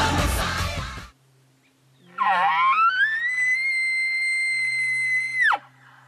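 A rock song with singing cuts off about a second in. Then a hunter blows an elk bugle call through a bugle tube, imitating a bull elk's bugle: a low, wavering grunt that rises into one long high whistle, held for about three seconds before it drops away sharply.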